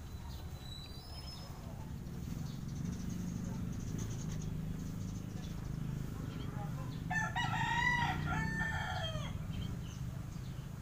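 A rooster crowing once in the background, a single drawn-out call with a falling end, about seven seconds in, over a steady low hum.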